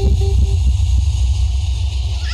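Heavy deep bass from a stack of four large subwoofers in a street sound system playing a DJ jingle at high volume. The music's higher notes and beat stop about half a second in, leaving the low bass rumbling on and slowly fading toward the end.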